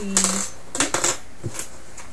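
Small metal piping tips clinking together as they are scooped up by hand: a few light metallic clicks in two quick clusters and one more about a second and a half in.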